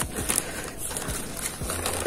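Black plastic nursery polybag rustling, with a few light crackles and clicks, as hands peel it open around a plant's roots.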